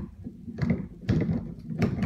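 Loud, irregular knocks and thuds over a low rumble, starting suddenly, from something being handled or moved close to the microphone.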